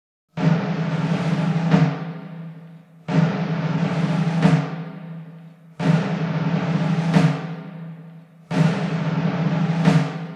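Orchestral music opening with four timpani rolls on the same low note, each about two and a half seconds long, rising to an accented stroke and then dying away; the fourth is still sounding near the end.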